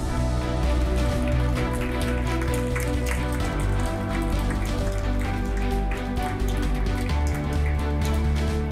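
Theme music with a heavy bass line, with a studio audience applauding over it in a dense patter of claps.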